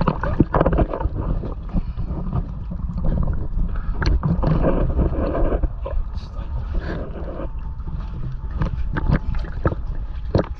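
Water sloshing and splashing right at the microphone as a person moves through it, with knocks and a low rumble from the camera being handled.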